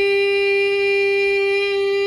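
A woman's unaccompanied singing voice holding one long, steady note on a single pitch.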